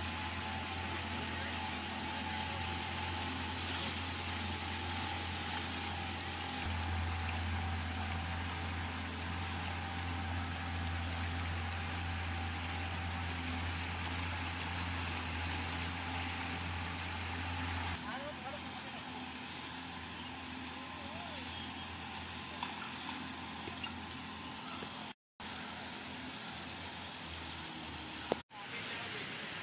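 A boat's outboard motor running steadily over the rush of river water; the low motor hum drops away about two-thirds of the way through, leaving the water noise. Faint voices in the background.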